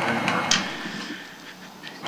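Quiet room tone with a single short click about half a second in.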